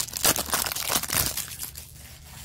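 Foil trading-card pack wrapper (Topps Chrome) being torn open and crinkled by hand, a run of crackly rustles that thins out near the end.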